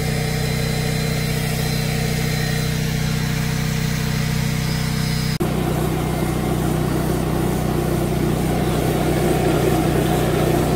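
Carpet extractor's vacuum running steadily as a water claw sucks dirty, urine-laden water out of a rug. About five seconds in the sound cuts off abruptly to a different, rougher machine noise.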